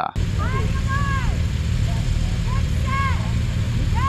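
Several motorcycles idling together at a start line, a steady low rumble, with a voice calling out twice over the engines.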